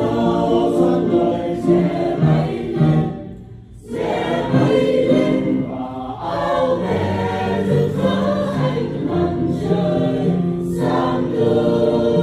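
Mixed choir of men's and women's voices singing a Vietnamese Catholic hymn, with a short break between phrases about three and a half seconds in.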